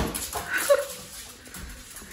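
Small black-and-tan dog giving a short, high whimper that drops in pitch as it dashes off, after a sudden knock at the start.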